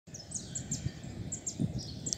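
Small birds chirping: a quick run of short, high chirps, each sliding downward, over a low outdoor rumble.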